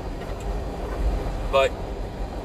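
Steady low rumble of a truck's engine and road noise inside the cab while driving.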